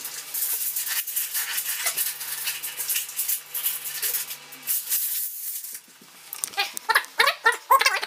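Steel tape measure rattling and scraping as its blade is run out and dragged across a vinyl floor, in sped-up audio. Near the end, brief high-pitched, sped-up chatter.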